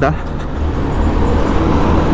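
Steady low engine and road rumble from riding a motorcycle in slow city traffic, with a large tanker truck running close alongside.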